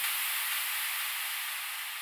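A steady wash of synthesized white noise from an electronic track's outro, with no drums or bass under it, slowly fading. The hiss sits high, with nothing in the low end.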